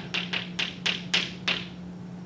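Chalk tapping and scraping on a blackboard in a quick run of about seven sharp strokes as a short bit of notation is written, stopping about a second and a half in.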